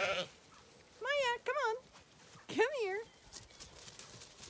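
Zwartbles sheep bleating: two short wavering bleats about a second in, then a third near the three-second mark.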